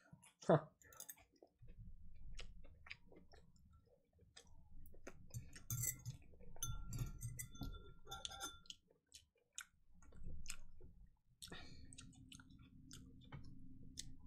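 Faint, irregular small clicks and taps over a low rumble.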